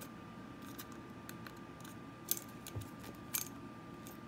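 A lop rabbit biting at a broom handle: a run of small sharp clicks of teeth on the handle, with two louder clicks a little past halfway and about a second later.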